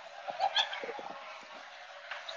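Restaurant room noise with faint, indistinct background voices and a few light clicks in the first second.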